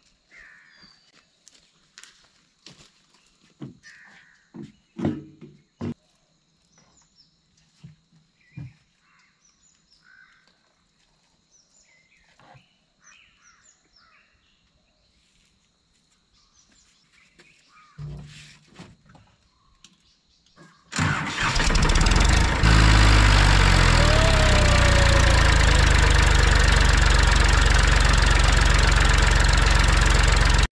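Scattered knocks and faint chirps, then about two-thirds of the way through a Massey Ferguson 241 DI tractor's diesel engine starts and runs loud and steady.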